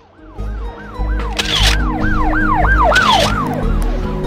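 An emergency-vehicle siren in a fast yelp, sweeping up and down about three times a second. It rises in out of silence over a low, heavy bass rumble, with two short hissing swooshes about a second and a half apart.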